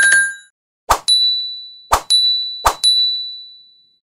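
End-screen sound effects for an animated subscribe button and notification bell: a bright chime at the start, then three clicks about a second apart, each followed by a high bell-like ding that rings on and fades away.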